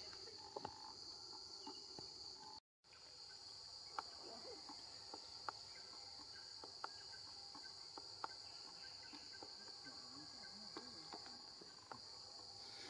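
Steady high-pitched chorus of insects, a continuous shrill drone, with a few faint sharp ticks scattered through it. The sound cuts out completely for a moment about a quarter of the way in.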